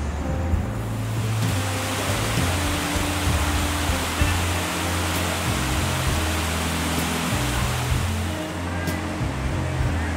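Rushing water from a man-made waterfall pouring into a rocky lagoon. It swells in about a second and a half in and eases off near the end, over music from outdoor speakers.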